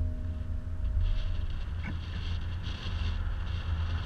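Steady low rumble and wind buffeting on the microphone from a BMW iX3 electric SUV driving along a road, mostly tyre and wind noise with no engine sound.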